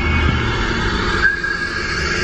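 Song playing over a car stereo, with a high steady note coming in a little after a second in, over the low rumble of the car driving.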